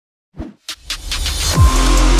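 Intro sting for a logo animation: after a moment of silence, a whoosh rises and builds, landing about a second and a half in on a deep bass boom that falls in pitch and opens electronic music.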